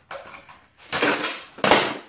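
Skateboard on a bare concrete floor: a sharp pop of the tail about a second in, then the board clattering down onto the concrete near the end, the loudest knock, as it lands on its side rail (a primo).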